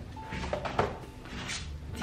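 Objects being handled and shifted while someone searches for a book: a few short, irregular knocks and rustles.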